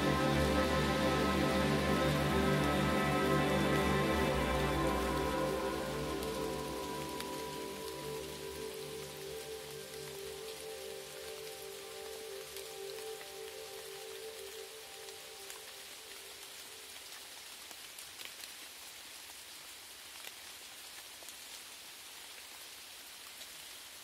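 Sustained ambient synthesizer pads fade out over the first several seconds, leaving a steady sound of falling rain with faint scattered drop ticks.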